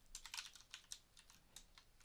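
Faint taps on a computer keyboard: several keys pressed in a quick, irregular run.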